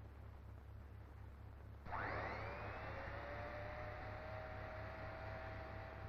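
A tyre-test rig spinning a model racing car's wheel with a solid tyre. A whine starts suddenly about two seconds in, glides in pitch for about a second, then holds steady as the wheel runs at speed.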